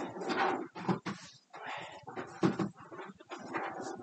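Irregular rustling and crinkling of a plastic trash bag being handled as a trash can liner is changed, in a run of short uneven bursts.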